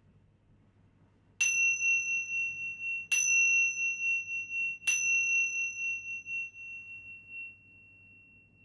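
A pair of tingsha cymbals struck together three times, about a second and a half apart. Each strike rings on in a clear, high tone that wavers in loudness, and the ringing slowly dies away after the third strike.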